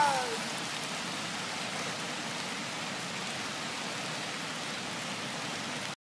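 Steady rain-like ambience layered under a lo-fi track. The tail of the last sung note glides down and fades in the first half second, leaving only the even rain hiss, which cuts off suddenly just before the end.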